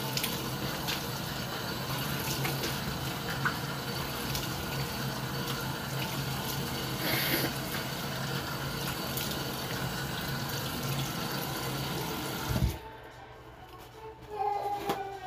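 Tap water running steadily into a sink while a face is washed, ending with a knock and a sudden cut-off near the end as the tap is shut.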